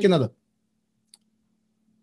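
A man's voice ends a spoken phrase, then a pause with a faint steady hum and one small faint click about a second in.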